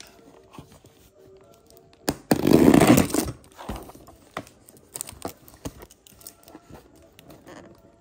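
A cardboard box wrapped in plastic packing tape being handled by hand: a loud, rough scraping rustle lasting just under a second about two seconds in, then small scratches and taps as fingers pick at the edge of the tape.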